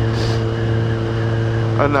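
Kawasaki Ninja 1000SX inline-four engine running at a steady speed, with wind and road noise, and a brief hiss just after the start.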